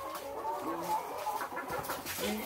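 Caged laying hens clucking, several birds calling at once in short, overlapping calls.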